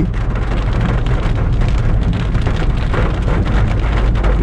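Rain falling on a moving car, a dense crackle of drops over the steady low rumble of the car and its tyres on the wet road.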